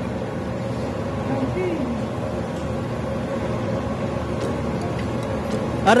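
Steady low background rumble with faint voices in it. A person starts speaking loudly right at the end.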